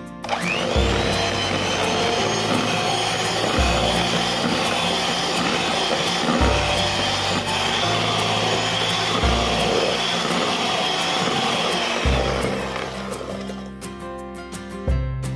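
Electric hand mixer running at high speed, its twin beaters churning margarine, butter and powdered sugar in a bowl; the motor whine rises as it spins up just after the start, holds steady, and winds down near the end.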